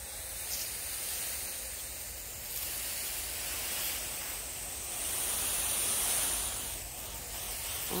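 Water spraying in a fine mist from a garden hose over plants and dry soil, a steady hiss that grows a little louder past the middle.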